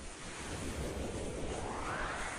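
A whoosh sound effect from an animated logo intro: a rushing noise that swells and rises steadily in pitch.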